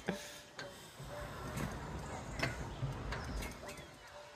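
A bungee trampoline in use as a rider bounces: a handful of sharp, irregular clicks and knocks, with faint voices and a low rumble in the background.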